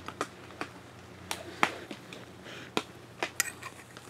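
Irregular light clicks and clinks of a metal spoon knocking against a glass mason jar as it is handled.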